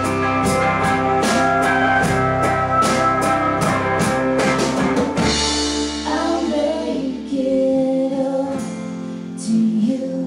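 Live country band of electric and acoustic guitars, fiddle, steel guitar, bass and drums playing the closing bars of a song. The drums stop about five seconds in and the band thins out to a few held notes.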